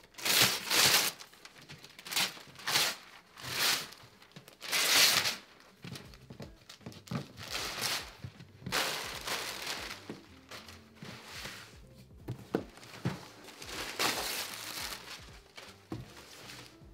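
Glossy wrapping paper being ripped off a large cardboard box and crumpled, in a run of separate tears, the loudest about a second in and again around five seconds in.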